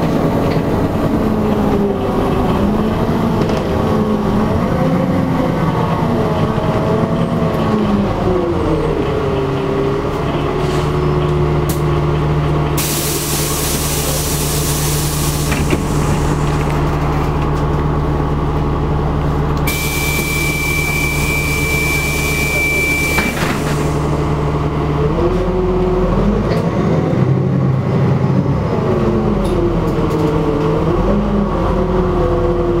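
Inside a NefAZ-5299-40-52 city bus: the engine's note wavers as it drives, then drops to a steady idle as the bus stands. Two long bursts of compressed-air hiss come while it is stopped, the second with a steady high beep, and the engine picks up again near the end as the bus pulls away.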